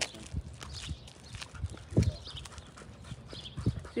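Footsteps on an asphalt path: soft thumps at a walking pace of about two a second, the loudest about halfway through.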